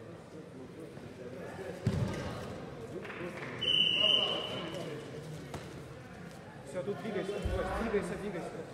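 Murmur of voices echoing in a large sports hall during a sambo bout, with a thud about two seconds in and a short high-pitched tone, like a whistle or beep, about halfway through.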